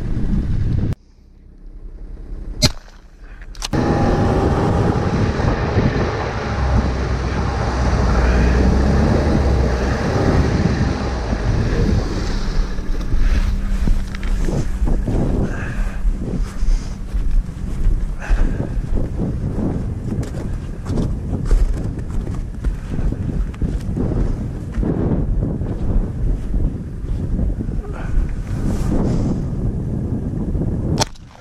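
Ski-Doo Skandic 900 ACE snowmobile, a three-cylinder four-stroke, running under way across snow, its engine pitch rising and falling as it changes speed, with wind rushing over the microphone. It starts about four seconds in, after a short quieter moment with two sharp clicks.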